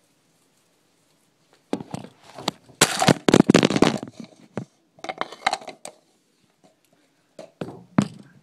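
A phone that is recording falls over: knocks and a clatter about two seconds in, then rustling, scraping and knocking against the phone's own microphone as it is handled and picked back up, with a few more clicks near the end.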